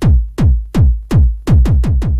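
Gabber hardcore track: a distorted kick drum beating about every third of a second (roughly 160 beats a minute), each kick dropping in pitch as it sounds. Near the end there is a quick run of three kicks.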